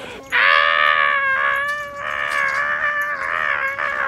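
A person's high-pitched, drawn-out excited shrieks of greeting: a few long cries in a row with short breaks between them.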